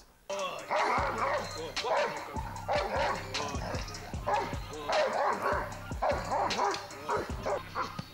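Doberman barking hard and rapidly, about two barks a second, in an excited protection-training frenzy.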